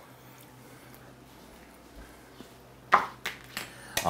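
Quiet room tone with a faint hum, then, about three seconds in, a sharp knock followed by a few lighter clatters as a plate of food is set down on a cutting board.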